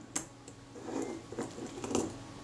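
Faint handling noise and a few small sharp clicks from a camera leaf shutter mechanism being turned and worked in the fingers.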